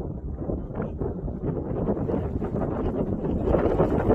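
Wind buffeting the microphone: a steady low rumbling noise that swells toward the end.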